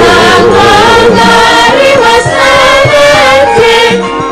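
Javanese gamelan ensemble playing, with female voices singing together over it in long, wavering held notes.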